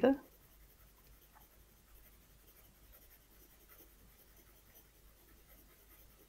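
HB graphite pencil scratching faintly on paper, moving in small, tight circles to shade an even patch of tone.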